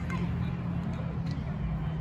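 Outdoor practice-field ambience: faint, distant voices over a steady low hum and rumble.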